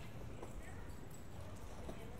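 Footsteps on a paved pedestrian street, a few hard clicks over a steady low rumble, with faint voices of passers-by.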